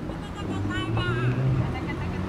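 Busy street ambience: people's voices chattering, with one high voice rising and falling about a second in, over a low steady hum of motor traffic.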